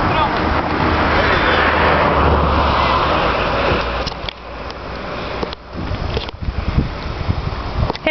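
Wind noise buffeting the camera microphone, a loud rushing rumble that drops away about halfway through, leaving a few light handling knocks.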